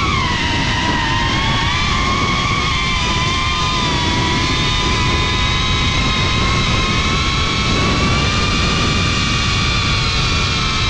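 FPV quadcopter's brushless motors whining, heard from the onboard GoPro, over wind rushing across the microphone. The whine drops in pitch just after the start as the throttle eases, then holds nearly steady.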